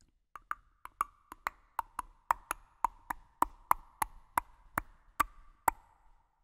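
A wooden percussion instrument struck about two dozen times as a short interlude: short, sharply pitched knocks that quicken to a few a second, then slow and space out, the last stroke coming near the end.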